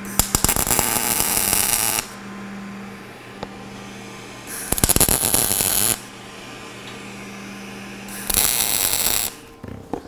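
Three tack welds with a Lincoln Electric POWER MIG 210 MP MIG welder on half-inch steel bar stock: the arc crackles for about two seconds, then about a second and a half, then about a second. A steady low hum runs in the gaps between the welds.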